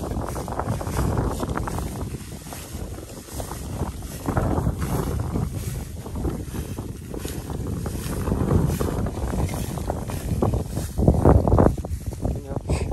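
Wind buffeting the microphone in gusts, with rustling and footfalls in dry rice straw and stubble as people walk through a harvested paddy.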